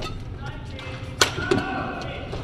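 Badminton racket striking a shuttlecock during a rally: a sharp crack near the start and a louder one a little past a second in. A dull thud of a player's footwork follows shortly after the second hit.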